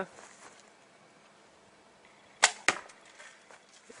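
An Oregon ash bow with a rawhide bowstring being shot: two sharp cracks about a quarter second apart, about two and a half seconds in. The string is stretching and the bow is down to about two inches of brace height, low enough to risk limb slap.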